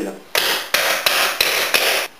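Five even hammer blows, about three a second, driving a washer and nut down over threaded rod into a counterbored hole in a hazel post.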